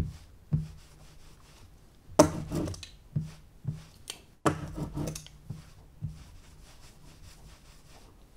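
An ink-loaded sponge rubbing and pressing over an aluminium-foil lithography plate, inking it. There are a few short, scratchy strokes, about half a second in, around two seconds in, and a longer one at four to five seconds.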